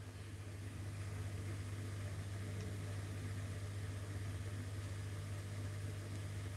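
Steady low hum with a faint even hiss: room background noise.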